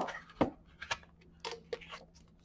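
Handling of a paperback guidebook and its cardboard box: a sharp tap about half a second in, then a few lighter clicks and paper rustles as the booklet is lifted out and its pages fan.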